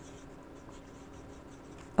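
Broad-nib fountain pen (Opus 88 Halo) writing on thin Tomoe River paper, a faint scratch of short pen strokes as a word is written.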